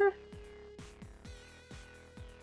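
Quiet background music with a steady electronic beat and a held tone.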